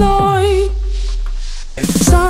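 Background pop song: a held sung note ends within the first second, leaving a deep bass note that slides down and holds through a short break in the beat. The beat comes back at the very end.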